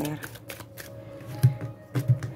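A deck of tarot cards being handled and shuffled by hand, with papery rustling, light clicks and two soft thumps, about a second and a half in and near the end.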